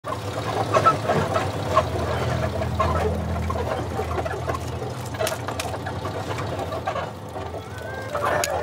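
Small Suzuki minitruck's engine running low and steady as it rolls slowly in, with scattered clicks and crackles over it.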